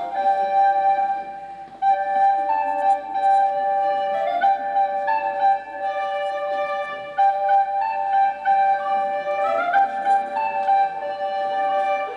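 A flute playing a slow solo melody of held notes, with a couple of quick rising runs.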